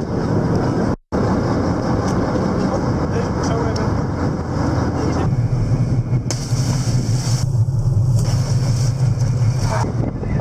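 Lifeboat engines running with a steady low drone and wind on the microphone. The drone grows stronger about five seconds in, and the sound cuts out briefly about a second in.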